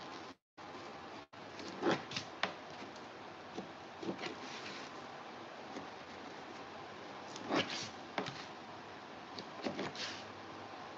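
A hot knife being worked through foam board along a printed cutout's edge: short, faint scrapes and rustles of the tip and the board against a cutting mat, over steady low hiss. The audio cuts out twice for a moment near the start.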